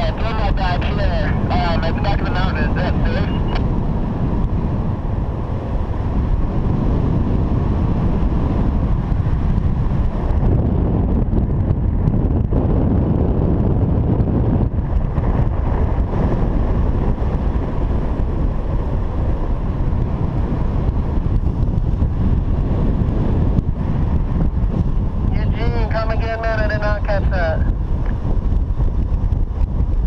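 Wind rushing over the microphone of a camera on a paraglider in flight, a loud, steady buffeting rush.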